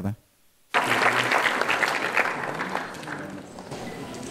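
Audience applauding in a hall, starting suddenly about three-quarters of a second in and slowly dying down.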